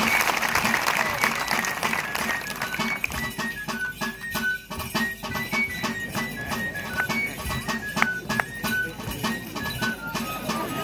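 A Basque one-man pipe and drum: a three-hole flute (txülüla) plays a high dance tune in short, stepping notes over steady drum strokes.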